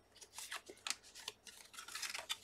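Faint rustling with a few short crinkles and ticks from a paper bag, fabric pieces and card being handled and drawn out of the packet.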